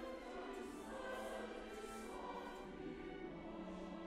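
Choir singing long held notes, the chords shifting a few times, with the soft hiss of sung consonants.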